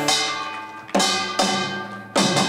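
Korean pungmul percussion, drums and a small hand gong, striking together in accents. Two strong hits about a second apart and a lighter one after, each ringing and fading.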